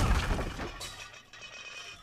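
A crash with shattering that dies away over about a second, leaving faint ringing notes under soft music.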